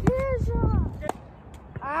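A brief young voice, then a tennis ball struck by a racket with a sharp pop about a second in, and another short knock near the end.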